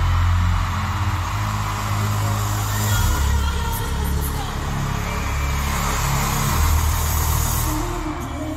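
Live arena pop concert audio: deep sustained synth bass notes that shift pitch every couple of seconds, under a steady wash of crowd noise.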